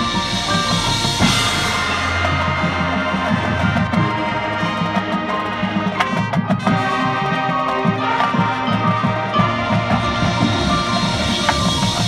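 High school marching band playing: sustained brass chords over marching drums and front-ensemble percussion, with a few sharp percussion hits about halfway through.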